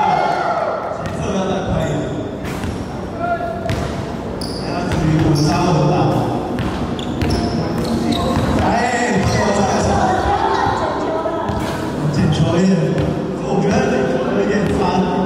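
Basketballs bouncing and thudding on a hardwood gym floor in repeated sharp impacts, ringing in a large hall, with voices talking and calling over them.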